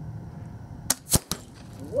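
Shotgun firing a hand-loaded Balle Flèche Sauvestre slug: a weak shot about a second in, heard as three quick sharp cracks within half a second, the middle one the loudest. The powder did not burn properly, so the slug left the barrel at only about 500 feet per second.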